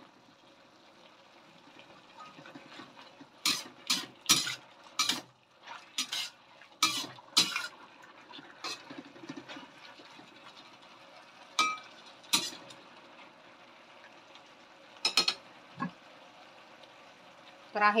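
Metal spatula stirring and scraping in a stainless steel wok: a string of short, sharp clinks and scrapes at irregular moments, thickest in the first half, over a quiet background.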